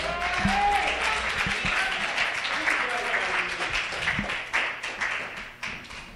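Congregation applauding, with voices heard over the clapping; the applause fades away near the end.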